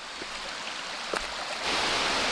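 Rushing water of a mountain stream, a steady hiss that gets louder about three-quarters of the way through, with two faint knocks of footsteps on rock.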